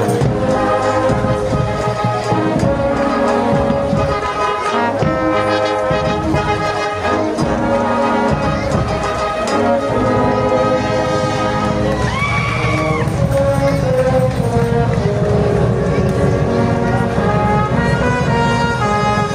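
Marching band playing, the brass holding long chords at a steady, loud level. About twelve seconds in, a wavering higher-pitched sound rises above the band for about a second.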